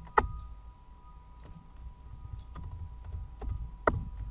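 Computer keyboard keystrokes: about five separate clicks spread over a few seconds, the loudest near the start and near the end, over a faint steady high whine.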